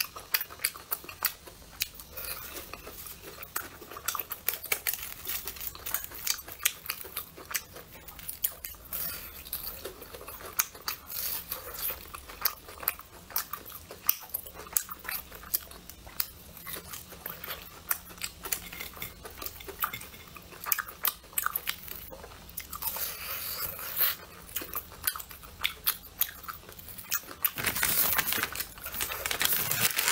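Close-up chewing and biting of deep-fried brown-sugar glutinous rice cakes (ciba) with a crisp crust and runny syrup filling: a dense run of small crunches and wet mouth clicks. Near the end a plastic package is picked up and crinkles loudly.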